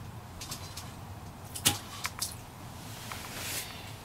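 Handling of an ice-fishing rod, inline reel and line: a few sharp clicks and taps, the loudest about a second and a half in, over a steady low hum.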